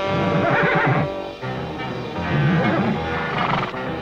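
Cartoon horse whinnying twice, each call about a second long, over background music.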